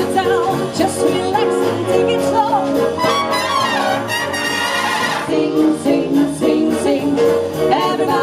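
A live swing big band playing, with the trumpets and trombones to the fore over drums and saxophones, and a female vocal trio singing in close harmony.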